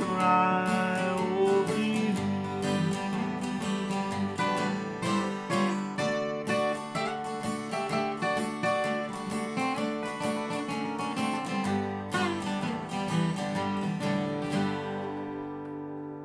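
Two acoustic guitars, one an Epiphone, playing a country instrumental outro in strummed and picked notes. The playing stops near the end and the last chord rings out, fading.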